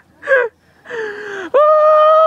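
Human voices exclaiming: a short cry, a breathy falling groan, then a loud, long held shout that starts about one and a half seconds in.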